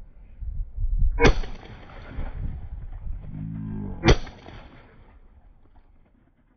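Two shotgun shots at clay targets, about three seconds apart, each a sharp report with a short echoing tail.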